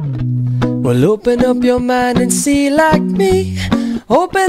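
Background music: plucked strings with a sung melody that slides between notes.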